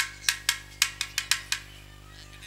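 A quick, uneven run of about eight sharp drum strikes from the stage band's drum set, stopping about a second and a half in.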